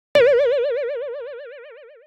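A cartoon 'boing' sound effect: a single wobbling, springy tone that starts suddenly and fades away steadily over about two seconds.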